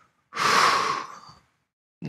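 A man's sharp, audible breath close to a headset microphone, about a second long and starting a moment in, taken in a pause of strained, emotional speech.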